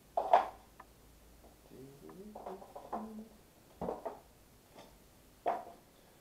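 A few short, sudden handling sounds, the loudest right at the start, with a man's voice murmuring softly in between.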